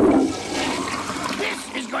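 A toilet flushing: a loud rush of water that starts all at once and is loudest at the start, then runs on steadily.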